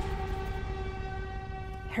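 A single held, horn-like note from a horror film score, pitched steady and slowly fading, cut off just before the end.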